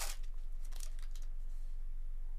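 Foil trading-card pack wrapper crinkling as the cards are slid out of it: a sharp rustle at the start and a few fainter crinkles within the first second, over a steady low electrical hum.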